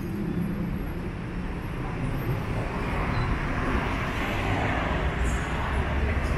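City road traffic noise: a steady low rumble of passing cars and engines.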